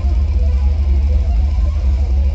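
Death metal played live at full volume: distorted electric guitar riffing over a drum kit, with a booming, overloaded low end. There is no bass guitar; the band is playing without its bass player.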